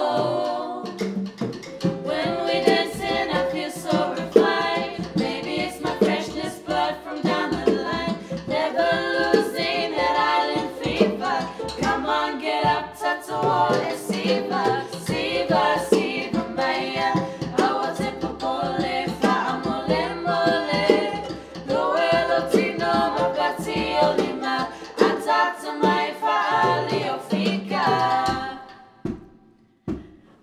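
A small group of young women singing in harmony, accompanied by a strummed ukulele, with a brief drop-off near the end before the singing carries on.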